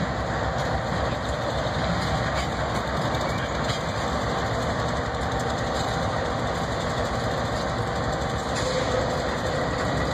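CSX and Union Pacific diesel freight locomotives idling, a steady low engine rumble with a faint steady whine that drops in pitch near the end.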